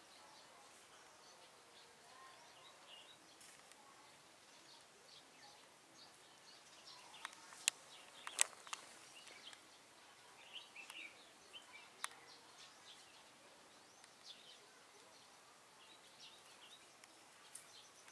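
Faint, scattered bird chirps over a quiet outdoor background, with a few sharp clicks about eight seconds in and once more about twelve seconds in.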